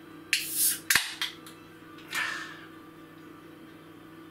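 Ring-pull of an aluminium beer can being opened: a sudden hiss of escaping gas and a sharp crack of the tab about a second in, the loudest sound. A second, shorter rush of noise follows about two seconds in.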